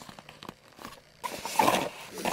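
Cardboard retail box being handled and opened: light clicks and taps from the flaps, then a louder scraping slide of cardboard in the second half as the box is pulled apart.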